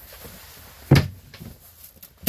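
A single sharp knock about a second in, with a few fainter clicks and knocks around it.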